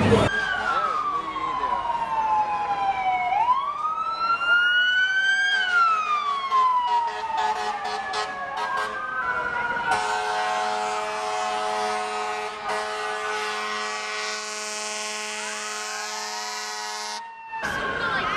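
Fire truck sirens wailing, their pitch falling slowly and swooping back up in long sweeps, more than one at a time. About ten seconds in, a long steady horn blast of several held tones takes over for about seven seconds and cuts off suddenly near the end.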